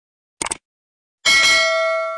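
A short sharp click, then about a second later a bright bell ding that rings on and slowly fades; these are the sound effects of an on-screen subscribe button being clicked and its notification bell ringing.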